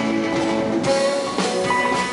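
Live jazz-rock band playing: electric guitar over a drum kit, with held notes, and the cymbals filling in just under a second in.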